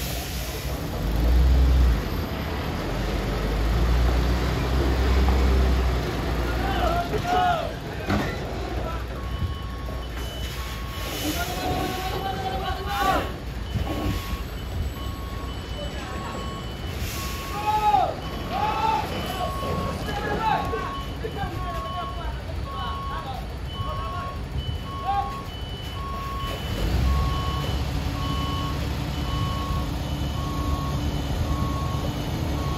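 Heavy truck's diesel engine running under load while it pulls a lowboy trailer carrying a crawler crane, then a reversing beeper sounding in a steady on-off pattern from about ten seconds in as the rig backs up on the bend; the engine picks up again near the end.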